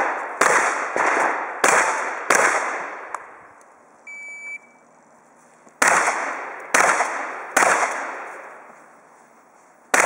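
Shots from a manually operated (pump-action) shotgun, fired in two strings of three, each report echoing and dying away over about a second. A short, high electronic beep sounds about four seconds in, between the strings, and another shot comes at the very end.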